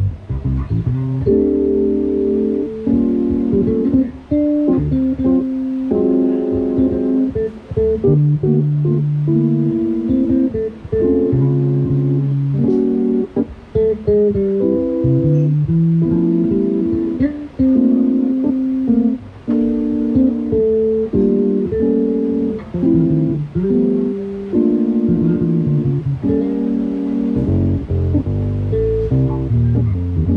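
Electric bass guitar and a Yamaha CP stage piano playing an instrumental piece together, a steady run of changing notes.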